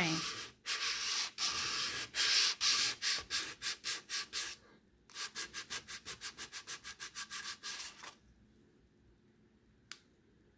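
Sandpaper rubbed by hand along the grain of a wooden salad bowl's bare underside, lightly taking off paint and marker marks. It rasps back and forth in longer strokes at first, then in quicker short strokes of about five a second, and stops about eight seconds in.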